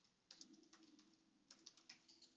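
Faint typing on a computer keyboard: a few quick keystrokes about half a second in, then another short run of keystrokes near the end.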